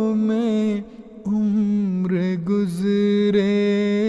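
A man singing an Urdu nazm solo in a melismatic style, holding long, wavering notes. He takes a short pause about a second in, then holds another long note.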